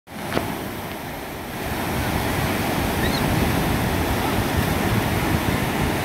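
Ocean surf breaking and washing into the shallows, a steady rush of whitewater that grows louder over the first two seconds.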